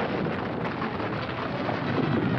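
A loud, steady rushing rumble with no clear pitch, from a film soundtrack.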